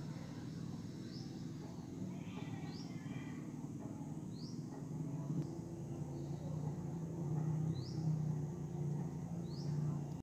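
Short rising bird chirps, repeated every second or two, over a steady low hum that grows louder in the second half.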